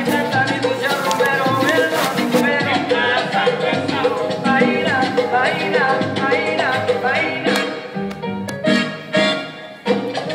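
Recorded salsa song playing, in its mambo section, where the arrangement kicks into new, mostly instrumental material. The music briefly drops in loudness near the end.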